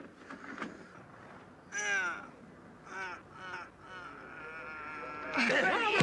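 Human voices giving short exclamations that rise and fall in pitch, the loudest about two seconds in and more around three seconds. Near the end a held tone leads into music, which comes in loudly.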